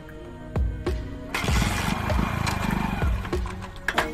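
Background music with a steady beat. Over it, a little past a second in, the Hero motorcycle's single-cylinder engine, fed hydrogen gas from a bottle, runs for about two seconds and then stops.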